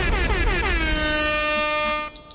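Horn-like sound effect: a single horn tone that slides down in pitch over about the first second, then holds steady and cuts off sharply at about two seconds.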